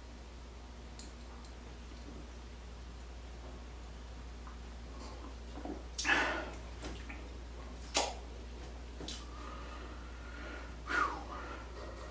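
A man sipping beer from a glass, with a few short sips, swallows and breaths through the nose in the second half and one sharp click, over a low steady hum.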